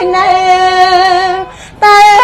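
A woman chanting Khmer smot, the sung recitation of Buddhist verse, holding one long steady note. She breaks off briefly about a second and a half in, then comes back in on a higher note.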